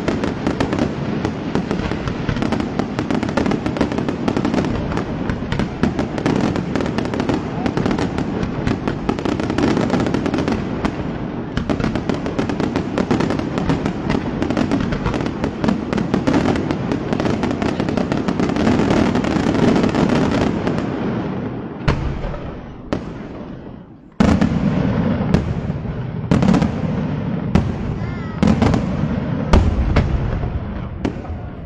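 Daytime fireworks: a dense, unbroken crackle of firecracker volleys and small bursts. It fades away about twenty-two seconds in, then resumes abruptly with a loud barrage of separate sharp bangs.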